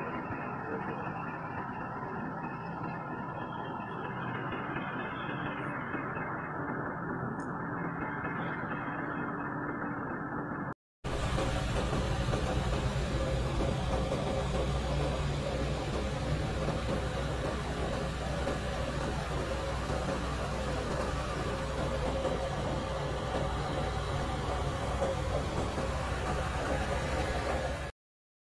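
Steady road and engine noise of a car driving along a highway, heard from inside the vehicle. The sound drops out for a moment about eleven seconds in and comes back louder, with a deeper rumble.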